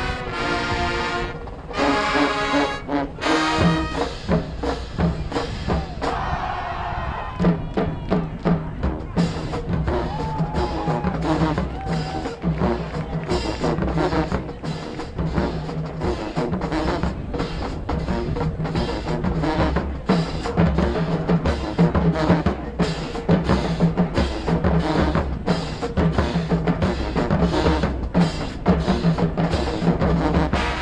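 High school marching band playing its field show. Held brass chords open, then from about seven seconds in the percussion section drives a fast, steady drum beat under the winds.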